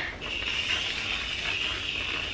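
Aerosol can of whipped cream spraying, a steady hiss that starts just after the beginning.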